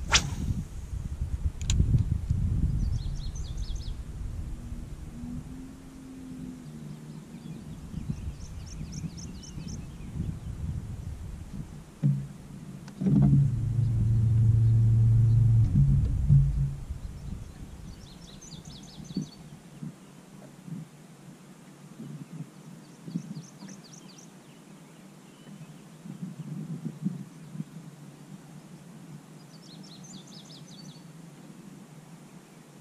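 A bass boat's bow-mounted electric trolling motor hums steadily for about three seconds midway, over low water and handling rumble. A bird's short, high trill repeats about five times.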